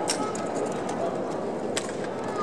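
Drill rifles slapped and caught by hand during exhibition rifle drill: a sharp smack right at the start and a louder one near the end, over steady background murmur.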